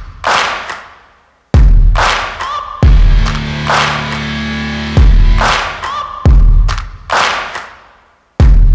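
Background music with heavy, regular bass-drum hits and a brief drop-out about one and a half seconds in.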